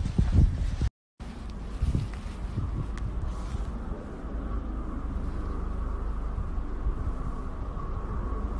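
Outdoor ambience picked up by a phone microphone: a low wind rumble on the mic with a faint steady hum above it. A louder rumble in the first second cuts off suddenly, and after a brief silence the steadier, quieter ambience carries on.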